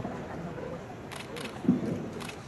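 Camera shutters clicking: two quick shutter clicks a little over a second in, over a low murmur of audience chatter. A brief, loud, low-pitched sound comes just before the end.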